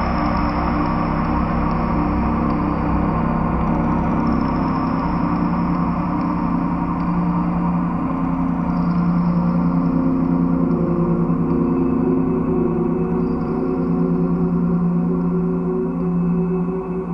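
Sustained ambient drone of bowed metal on a DIY noisebox, picked up by piezoelectric sensors and stretched out by delay and reverb, layered with held synthesizer tones. Several steady low pitches ring on without a break, shifting slightly as the notes change.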